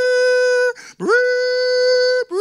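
A man's voice imitating a loud trumpet blast into a handheld microphone: long held notes on one pitch, each scooping up at the start, with a short break about three-quarters of a second in.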